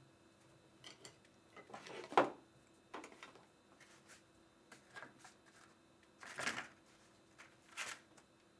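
Quiet clinks and taps of paintbrushes, glass jars and a paint plate being handled on a table: a handful of short knocks, the loudest about two seconds in.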